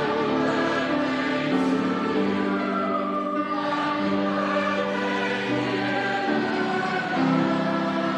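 A large mixed choir singing in harmony under a conductor, holding sustained chords that change every second or two.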